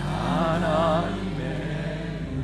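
Worship music: a single voice holds a sung note with a wide vibrato over soft, steady instrumental accompaniment, then eases off about a second in while the accompaniment carries on.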